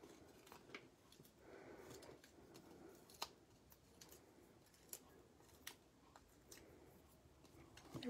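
Near silence with faint rustling and a few small, sharp clicks as glue dots are put onto a small paper card piece, which is then pressed onto a card.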